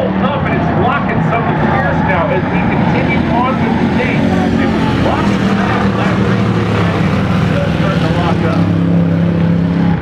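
Steady drone of engines, with faint talk over it.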